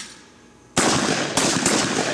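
A shotgun fired at a clay pigeon: one sudden loud blast about three-quarters of a second in, followed by a long, loud, noisy tail.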